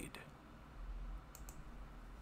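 Two faint computer mouse clicks in quick succession about a second and a half in, over a low steady hum.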